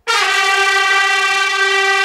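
A loud, sustained brass-style chord from a dramatic music sting, cutting in suddenly and holding steady.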